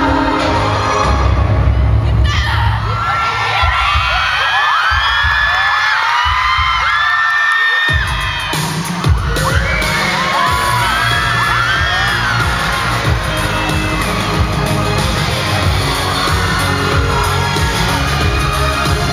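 Loud dance music with a heavy bass beat, and a packed audience of schoolgirls screaming and cheering. About two seconds in the bass drops out, leaving the shrill screams on their own, and the beat comes back in about eight seconds in, with the screaming carrying on over it.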